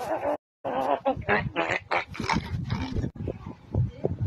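A woman's wordless vocal sounds, grunts and mouth noises rather than words, broken by a brief dropout to silence about half a second in.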